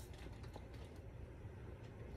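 Faint handling noise from a shrink-wrapped board game box being held and moved, a few light clicks and crinkles over a low steady room hum.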